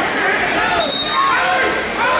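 Several voices of coaches and spectators shouting over one another in a large gym hall during a youth wrestling bout.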